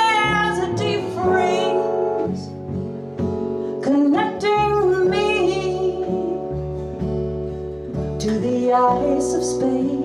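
A woman singing live, her phrases rising and falling with short breaks, over her own strummed acoustic guitar and plucked upright bass notes underneath.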